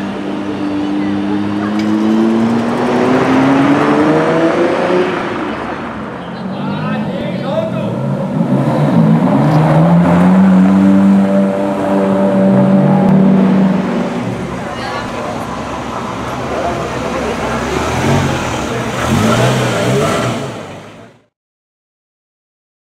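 Ferrari sports cars accelerating away one after another, engines revving with pitch climbing over the first few seconds, then a second car pulling off more strongly about 9 seconds in and holding a high steady note for a few seconds, with crowd voices around. The sound cuts off abruptly near the end.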